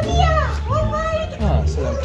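High-pitched, voice-like vocal sounds that slide up and down in pitch, over background music with a steady bass.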